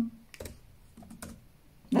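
Computer keyboard typing: a few scattered keystrokes finishing a typed line, ending with the Enter key.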